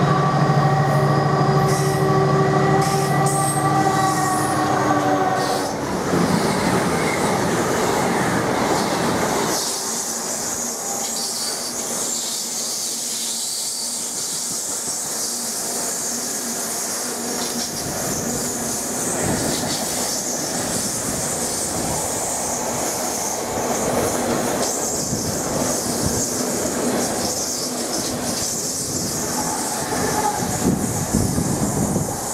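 Colas Rail Class 70 diesel locomotive passing close by with a steady engine note for the first several seconds. Then a long rake of loaded engineer's wagons rolls past, with rumbling and clattering wheels on the rails and a continuous high wheel squeal. Another locomotive draws level near the end.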